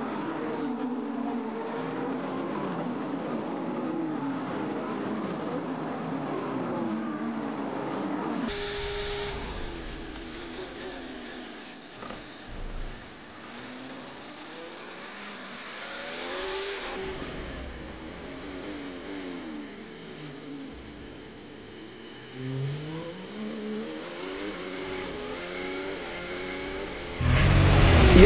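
Formula 1 cars' 1.6-litre turbocharged V6 hybrid engines at racing speed, the engine note rising and falling through gear changes as two cars run wheel to wheel. About eight seconds in, the sound switches to a car's onboard engine sound. A louder transition sound cuts in near the end.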